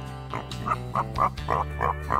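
A quick run of short, yappy animal-like calls, about four or five a second, over steady sustained background music: a comic sound-effect sting.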